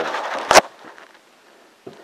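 Handling noise on a wooden workbench: a short rustle, then a single sharp knock about half a second in, and a faint click near the end.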